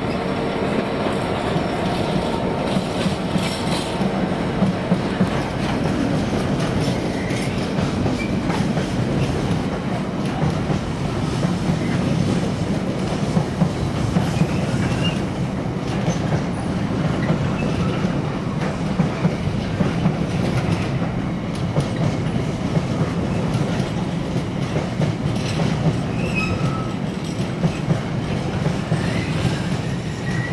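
Container wagons of a long intermodal freight train rolling past on the main line: a steady rumble of steel wheels on rail, with irregular clattering peaks as the bogies pass over the track.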